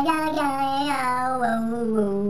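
A single voice singing, holding a long drawn-out note that wavers a little in pitch: the final sustained word of a comic outro song.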